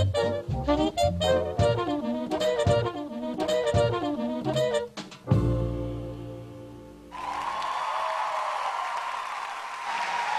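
Swing big-band recording with saxophone and brass playing rhythmic hits, ending on a long held final chord about five seconds in that fades away. About seven seconds in, audience applause begins and continues.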